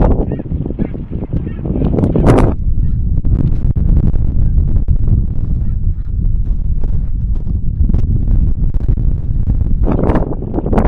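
Snow geese honking in quick, high calls, thickest in the first couple of seconds and again at the very end, over steady wind rumble on the microphone.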